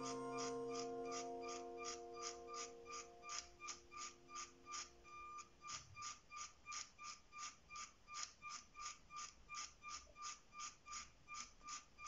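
Faint, evenly spaced ticking, about three and a half ticks a second, each tick with a slight ring. Under it a held music chord fades away over the first few seconds.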